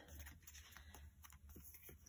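Near silence, with a few faint ticks and rustles of paper cardstock being handled.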